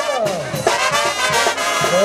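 Brass band music playing loudly and without a break.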